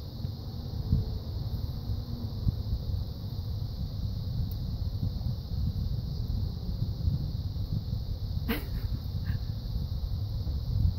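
Steady low wind rumble on the microphone. About eight and a half seconds in there is one sharp, brief sound, followed by a shorter one.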